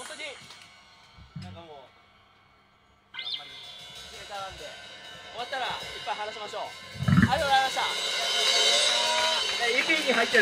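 Live post-hardcore band in a small club: shouted vocals over quiet guitar. About seven seconds in, the band comes in loud with drums, cymbals and distorted guitars under screamed vocals.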